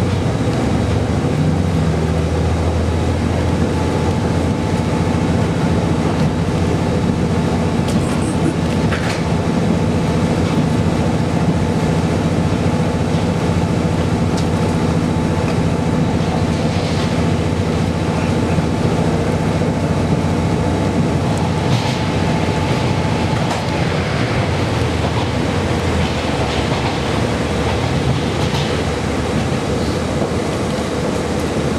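Cabin sound inside a moving JR KiHa 40 series diesel railcar: the diesel engine runs with a steady low hum over continuous wheel and rail noise, with a few brief high-pitched squeaks along the way.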